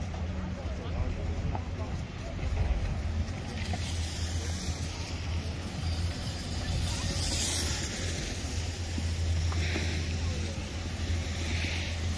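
Wind buffeting the microphone on an open ski slope, a steady low rumble, with a broad hiss joining about four seconds in and faint voices of people around.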